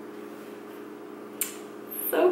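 Quiet room tone with a steady hum of a few fixed low tones. There is one brief soft click about one and a half seconds in.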